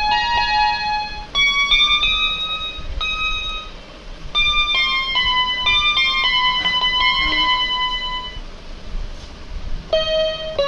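GOOYO GY-430A1 toy electronic keyboard playing a simple melody, one note at a time, with a brief pause about four seconds in and fewer notes near the end.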